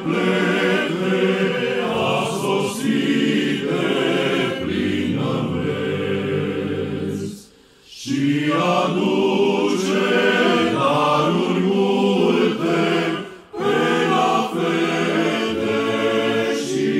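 Men's choir singing a Romanian Christmas carol a cappella in several voice parts, with a short pause between phrases about halfway through and a brief break near the end.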